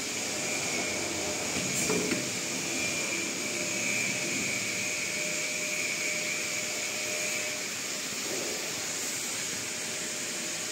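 Cylinder screen-printing machine running with a steady hiss and a constant high whine, and a light click about two seconds in.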